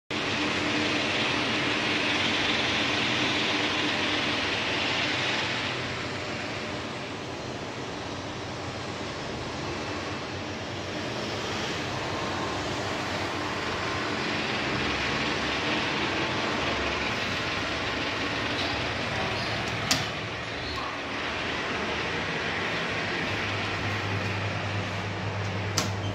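Steady rushing noise at a lift landing, louder for the first few seconds. There is a sharp click about 20 seconds in and another near the end, and a low steady hum comes in shortly before the end.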